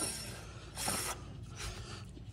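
A short metallic scrape about a second in, then a fainter one, from the front locking hub of a 1948 Willys jeep being turned by hand to lock or unlock it.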